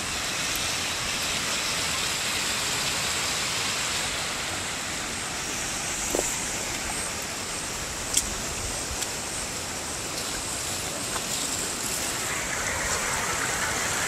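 Shallow river running over flat rock riffles: a steady rush of water with no break, with a couple of faint ticks around the middle.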